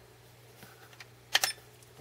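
Push-button clicks on a SkyRC MC3000 battery charger's front panel: a couple of faint clicks, then a sharper double click about one and a half seconds in, over a faint steady hum.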